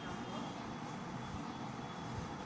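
Quiet steady background rumble and hiss, with the faint scratch of a pen writing on notebook paper.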